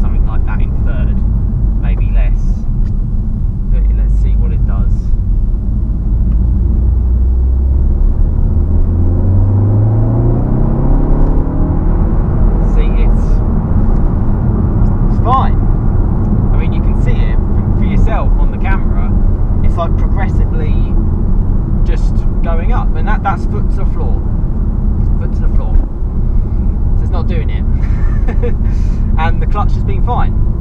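Cabin sound of a VW MK7 Golf R's turbocharged four-cylinder engine under road noise. After a steady cruise, the revs climb smoothly for about four seconds, about eight seconds in, as the car pulls hard in third gear. This is the gear and spot where the owner had earlier seen the clutch slip and over-rev.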